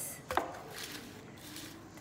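Wooden salad servers tossing rocket and romaine lettuce leaves in a wooden bowl: one sharp wooden knock about a third of a second in, then faint rustling of leaves.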